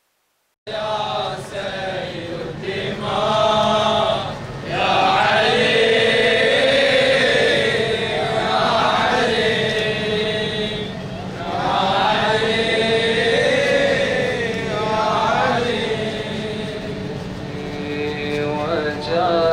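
A radood (Shia lament reciter) chanting a slow, melismatic Arabic lament into a microphone, in long held notes that rise and fall, with short breaks between phrases. It starts abruptly just under a second in.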